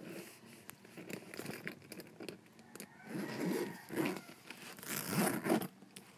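A handbag's gold-tone metal zipper being pulled open, with scratchy rasping and rustling as the bag is handled. The loudest bursts come from about three to five and a half seconds in.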